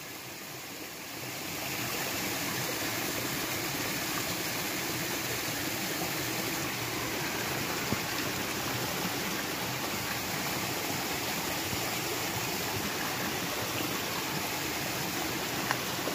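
Small mountain creek running and splashing over rocks in a steady rush. It grows louder over the first two seconds, then holds even.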